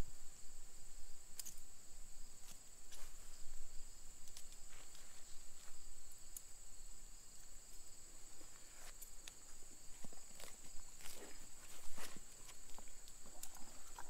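A steady high insect chorus, typical of crickets, with scattered soft rustles and taps from a rope being handled and pulled.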